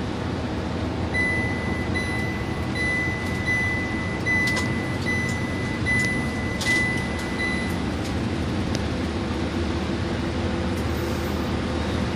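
Cabin noise of an express coach at highway speed: a steady engine and road rumble. Over it, a high electronic beep repeats about every two-thirds of a second from about a second in until about eight seconds in, with a few light rattles.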